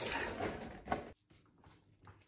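Brief handling noise with a click about a second in, then near silence.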